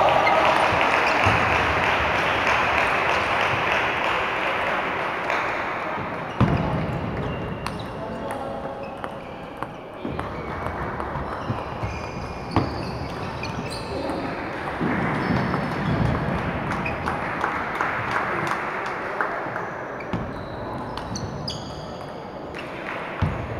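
Table tennis balls clicking off paddles and the table in scattered, sharp knocks, over a steady din of voices and play from other tables echoing through a large sports hall. The din swells in the first few seconds and again in the latter half.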